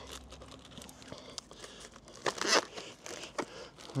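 Plastic pack wrapping on a timber pack crinkling in a few short rustles as it is handled and pulled aside to show the boards, the loudest about halfway through.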